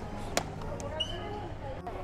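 Busy store ambience with indistinct background voices, broken by two sharp knocks, one about a third of a second in and one about a second in, the second with a brief high ping.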